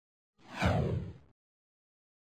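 A whoosh sound effect for an animated title: one sweep with a deep low rumble, falling in pitch and lasting about a second before cutting off suddenly.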